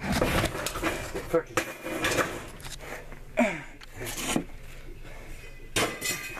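Junk and scrap metal being handled and shifted about: irregular clattering and knocking, densest in the first two seconds, with a sharp knock just before the end. A voice is heard briefly in the middle.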